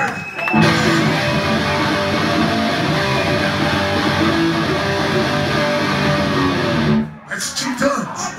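Electric guitar playing a riff through an amplifier, starting about half a second in and cutting off about seven seconds in.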